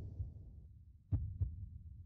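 Heartbeat-like sound effect from a segment intro: two low double thumps, one at the start and one a little past a second in.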